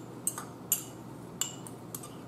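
Metal fork clinking against a small ceramic cup as food is picked out of it: four sharp clinks, the second the loudest.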